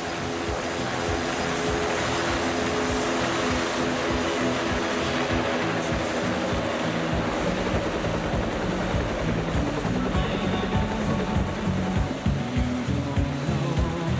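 Helicopter rotor blades chopping rapidly, growing louder over the first couple of seconds and then holding, under a synth-pop song.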